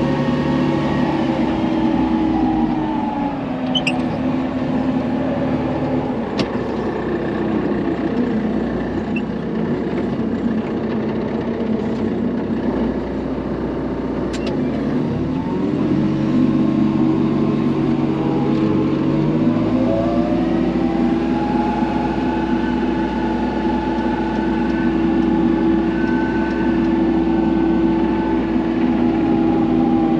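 Manitou telehandler's diesel engine running, heard from inside the cab. Its note drops about three seconds in, then revs back up around the middle and holds, with a higher whine rising in pitch just after.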